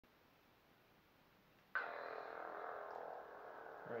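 Neopixel lightsaber, driven by a Proffieboard sound board, igniting with a sudden ignition sound from its speaker a little under two seconds in. It then settles into a steady hum made of several tones.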